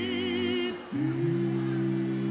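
Live music: voices holding a sustained chord with a high wavering tone above it, which breaks off just under a second in; a new low held chord then begins.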